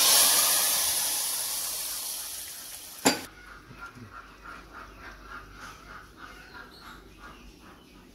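Hot tadka (oil and spices) poured into dal in an aluminium pressure cooker, sizzling loudly and dying away over about three seconds. Then a single sharp metallic click as the pressure-cooker lid goes on.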